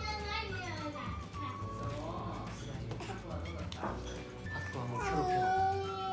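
Infant babbling and squealing, with pitch glides near the start and a longer held cry about five seconds in, over background music.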